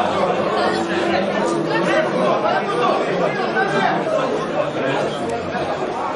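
Many voices talking over one another in a steady hubbub of chatter.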